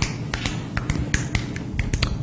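An irregular run of sharp clicks and taps, several a second, over low room hum.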